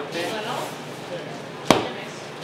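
Bread dough being kneaded by hand: it is lifted and slapped down once onto the worktable, a single sharp slap near the end, with softer sounds of the dough being handled before it.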